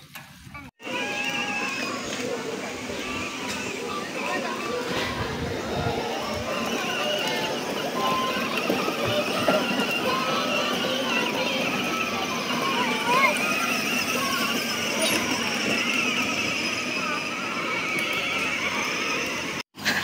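Indistinct, overlapping voices over a steady, busy background, with no clear words. The sound cuts out abruptly just under a second in and again just before the end.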